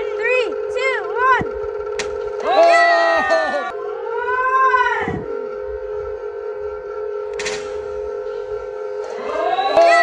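Onewheel hub motors spinning their tyres with a steady whine, with two sharp smacks about two seconds and seven and a half seconds in as tennis balls are fired off the tyres. Over them come drawn-out exclamations that rise and fall in pitch.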